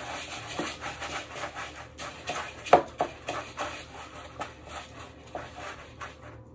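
Hands rubbing and pressing breadcrumbs onto raw chicken pieces in a plastic bowl: a run of short, scratchy rustles, two or three a second, with one sharper knock against the bowl a little under three seconds in.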